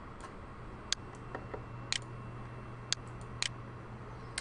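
Computer mouse clicking: about a dozen short, sharp clicks at irregular intervals, the strongest roughly once a second, over a faint steady low hum.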